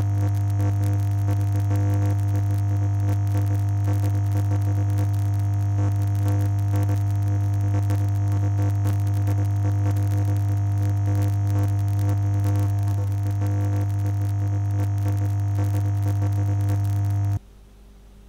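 A loud, steady low drone from the film's sound design, with several sustained tones layered above it. It cuts off abruptly near the end, leaving a faint hiss and hum.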